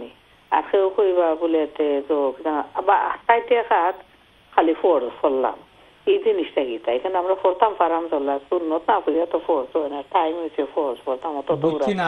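A caller talking over a telephone line, the voice thin and narrow as heard through a phone connection, speaking in phrases with short pauses. Near the end a fuller, closer voice starts speaking.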